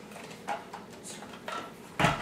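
A few soft knocks and handling noises from a hand-crank pasta machine being moved on a wooden table: one about half a second in, one about a second and a half in, and a sharper knock at the very end.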